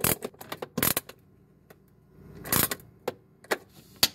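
Nut driver tightening the single screw of a plastic refrigerator damper cover: irregular sharp clicks and scrapes of tool, screw and plastic, with a longer, louder scrape about two and a half seconds in.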